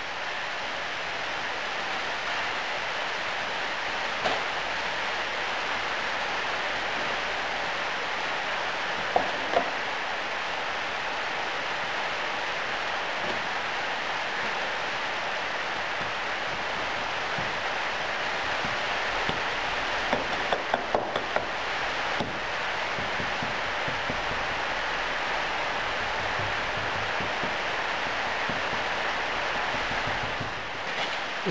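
A steady hiss throughout, with a few light knocks: one about four seconds in, two close together near ten seconds, and a quick cluster around twenty to twenty-two seconds, as backing sand is rammed into a metal moulding flask with a wooden rammer.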